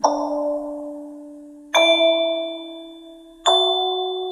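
Lullaby music of slow, bell-like struck notes: three notes, each ringing out and fading before the next.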